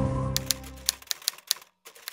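Background music fades out, then a quick, uneven run of sharp typewriter key clicks, a typing sound effect.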